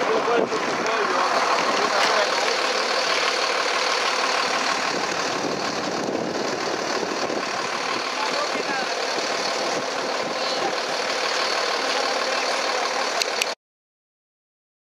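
Steady outdoor background noise with faint, indistinct voices, cutting off abruptly near the end.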